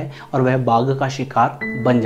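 Soft background music with a steady low drone. About one and a half seconds in, a bell-like chime sounds and rings on, under a man's speaking voice.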